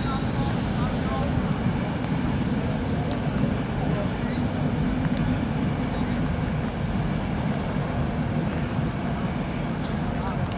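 Field sound of an amateur football match: distant players' calls and shouts over a steady low rumble, with a few faint sharp knocks such as a ball being kicked.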